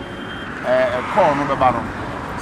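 A man speaking, with a steady hum of roadside traffic behind him.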